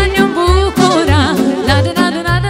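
Live Romanian folk party music: a woman singing an ornamented melody with violin, saxophone, accordion and keyboard, over a bass beat about twice a second.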